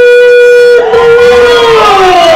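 Ring announcer's voice over a loud PA, holding one long drawn-out note as he calls out the winner's name, then sliding down in pitch in the second half as other voices join.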